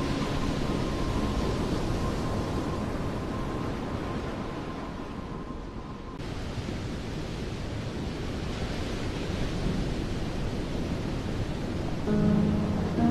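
Steady rushing noise with no music, like surf or wind. It sinks slowly to its quietest about six seconds in, where a faint held tone cuts off, then swells again.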